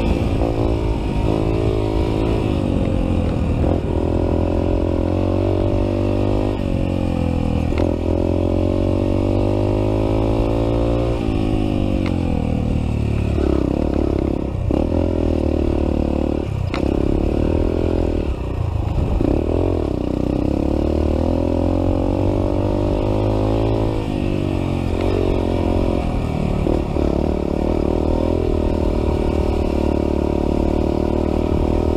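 Dirt bike engine revving up and down as it is ridden along a rough trail, heard close from a handlebar-mounted camera. The pitch rises and falls continually with the throttle.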